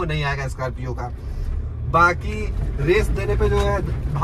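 A man's voice in short phrases over the steady low drone of a Mahindra Scorpio's mHawk diesel engine and road noise, heard inside the cabin while driving.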